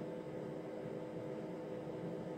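Faint steady hiss with a low steady hum from powered radio test-bench equipment, unchanging throughout.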